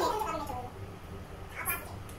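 A person's high, meow-like cry that falls in pitch over about half a second, then fades. A short hiss follows near the end.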